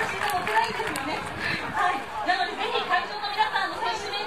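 Speech: a woman talking, with chatter around her.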